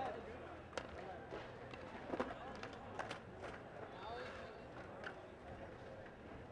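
Faint crowd chatter in a large hall, broken by a handful of sharp clacks of skateboards striking a hard floor.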